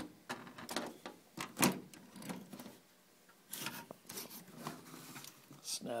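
A hard drive being handled and fitted into a tool-less drive tray: a series of short clicks, knocks and scrapes, the loudest about a second and a half in and a busier cluster near the middle.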